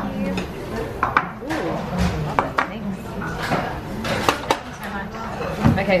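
Background chatter of voices with scattered sharp clinks and knocks of bowls, dishes and cutlery being handled on a table.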